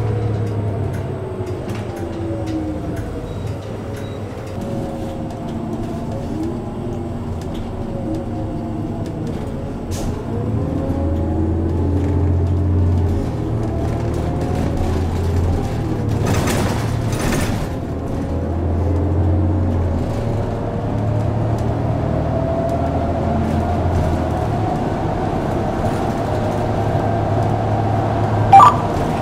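City transit bus under way, heard from inside the cabin: a steady low engine drone, with a whine that rises and falls in pitch several times as the bus gathers speed. About sixteen seconds in there is a short burst of hissing air.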